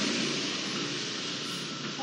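Steady hiss of background noise, even and unchanging, with no distinct events.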